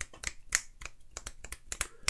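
Fingers snapping over and over, both hands, a quick uneven run of sharp clicks several times a second.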